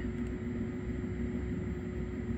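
Steady hum and whir of a desktop computer's fans while its Ryzen 9 12-core processor works under about half load running a local AI model, with a faint steady tone over it.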